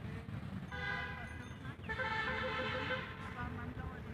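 A vehicle horn sounding twice: a toot of about a second, then a slightly longer one right after it, over a low rumble.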